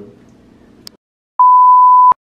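A loud, steady, single-pitched test-tone beep, the kind that goes with a colour-bar test pattern, starting about one and a half seconds in after a moment of silence. Before it, the tail of a man's voice and a brief click.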